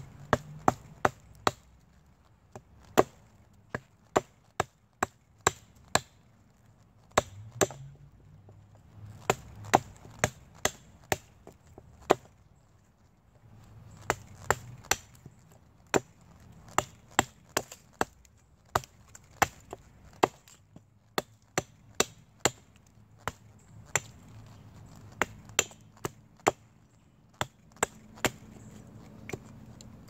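Small hatchet chopping into a hard, resin-soaked pine fatwood knot: sharp wooden chops in irregular runs of several blows, about two a second, with brief pauses between runs.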